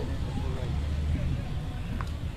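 Cars rolling slowly past at close range, a steady low engine and tyre rumble, with faint voices in the background.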